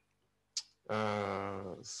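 A man's voice after a brief silence: a quick breath, then a long drawn-out hesitation sound, "eh", falling slightly in pitch.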